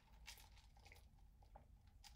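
Near silence, with a few faint soft clicks from sipping out of a red plastic cup.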